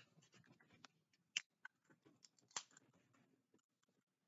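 Faint handling noises close to the microphone: soft rustling with a scatter of small clicks and knocks, two of them louder, about a second and a half and two and a half seconds in.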